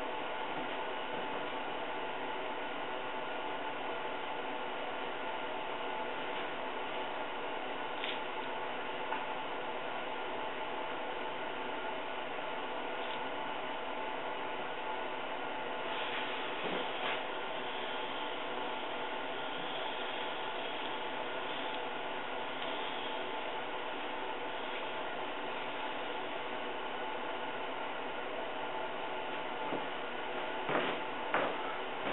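Air compressor running steadily, a mechanical drone with a few light knocks partway through.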